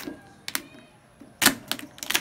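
Cleaver chopping and cracking through a steamed mud crab's shell onto a plastic cutting board: a few sharp knocks, the loudest pair about one and a half seconds in.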